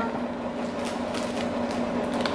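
A steady low hum with a few faint, soft ticks over it.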